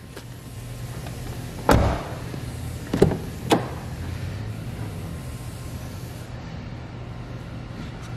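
A car door shuts with a heavy thud about two seconds in, followed a second or so later by two sharp latch clicks as the next door is worked. Beneath it, the 2.4-litre four-cylinder engine idles as a steady low hum.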